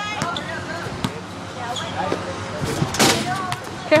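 A basketball bouncing, with a few sharp thuds, the loudest about three seconds in, over background voices.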